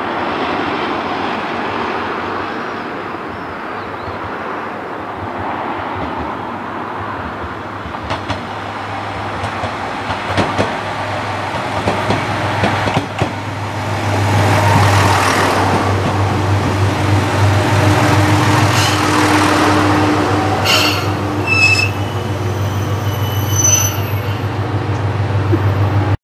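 Single-car diesel railcar approaching and pulling in: its engine hum grows much louder about halfway through as it comes alongside, with a few sharp wheel clicks before that. Short high-pitched brake squeals come near the end as it slows to stop.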